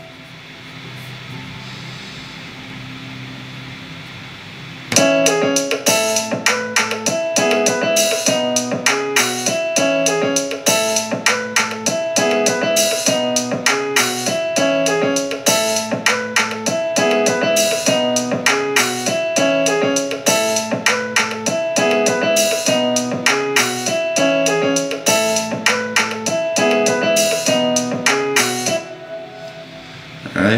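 Playback of a home-produced beat: a software grand piano riff over a programmed drum kit and fingerstyle bass, with the piano mixed way too loud. A softer held sound comes first, then the full beat starts about five seconds in and repeats its pattern, stopping about a second before the end.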